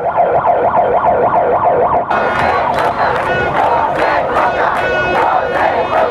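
A protest crowd shouting and chanting, with a siren-like wail rising and falling about four times a second. About two seconds in the sound changes abruptly to a brighter, fuller crowd, with steady whistle-like tones in it.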